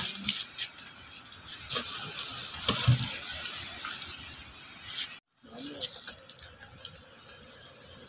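A steady watery hiss with scattered clicks and soft knocks that cuts off abruptly about five seconds in, followed by a fainter stretch with a few isolated clicks.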